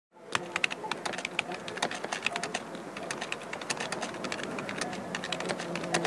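Typing on a computer keyboard: rapid, irregular key clicks, several a second.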